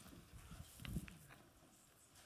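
Near silence with a few faint soft knocks and light clicks in the first second, typical of small objects being handled on a table.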